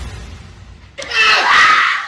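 A dance track's tail fades away, then about a second in a girl lets out a sudden loud, high scream that holds for about a second.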